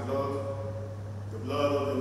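A priest chanting a prayer at the altar in long held notes, two phrases with a short pause between them, over a steady low hum.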